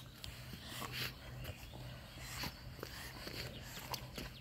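Lagotto Romagnolo dog swimming with a stick in its mouth, breathing hard through its nose, with small splashes of water; faint and irregular.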